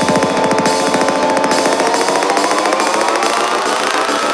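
Psytrance track in a build-up: a fast, pulsing synth pattern under a tone that rises steadily in pitch, while the bass thins out about half a second in.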